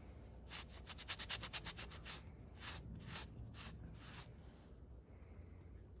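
A cloth rag rubbed back and forth along a steel knife blade, wiping corrosion residue off the H1 blade after a saltwater test. It starts as a quick run of strokes, then slows to a few separate wipes, and stops a little after four seconds in.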